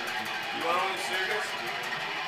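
A guitar played quietly, with faint talking over it.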